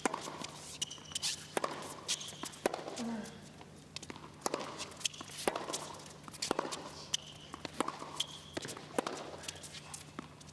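Tennis rally on a hard court: racket strikes and ball bounces coming about once a second, with short squeaks of shoes on the court between them.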